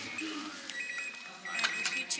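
An electronic device beeping: two steady high-pitched beeps, the second longer, with a sharp click during the second.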